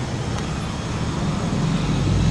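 Steady low rumble of passing road traffic, swelling slightly near the end.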